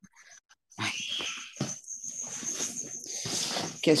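Small children screaming and shrieking next door, heard through a video-call microphone as a harsh, noisy sound. It starts about three-quarters of a second in and lasts about three seconds.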